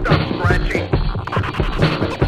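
Hip-hop DJ track: turntable scratching over a steady drum beat, with short quick sweeps of pitch cut between the drum hits.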